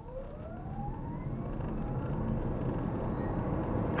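MG ZS EV's electric drive motor whining higher and higher in pitch under full-throttle acceleration from a standstill, with tyre and road noise growing steadily louder, heard from inside the cabin.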